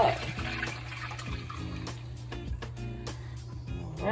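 Hot liquid Jello mixture poured from a saucepan into a container, a steady pour, with background music playing.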